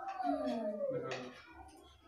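A drawn-out vocal sound, a person's voice sliding down in pitch for about a second, then fading to quiet.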